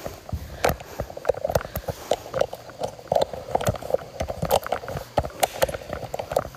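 Close handling and movement noise: a run of small irregular clicks and knocks, several a second.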